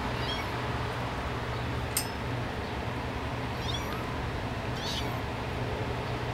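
Kittens giving three faint, high-pitched mews over a steady low hum, with a single sharp click about two seconds in.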